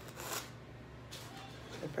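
Crisp crackling rustle of the breading on a fried catfish fillet being handled in the fingers, heard twice, about a second apart.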